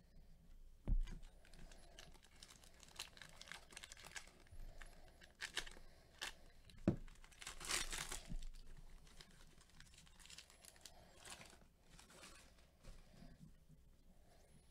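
A foil trading-card pack being torn open and its wrapper crinkled, in quiet scattered bursts that are loudest about eight seconds in. There are a couple of soft thumps from handling, one about a second in and one about seven seconds in.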